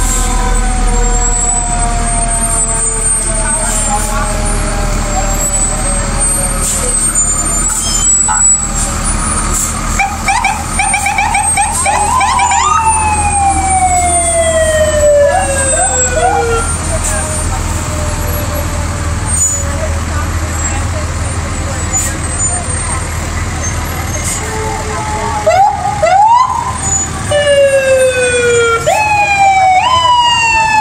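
Fire engine sirens sounding as the trucks pass slowly, in several wails that climb quickly and then wind down slowly over a few seconds each. Under them runs the steady low rumble of the fire trucks' engines.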